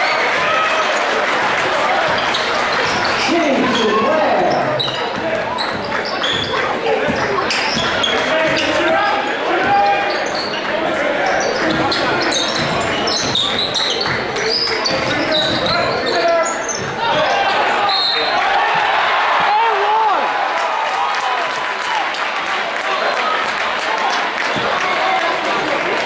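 A basketball being dribbled and bouncing on a hardwood gym floor during live play, with repeated thuds, over a continuous hubbub of crowd voices and shouts.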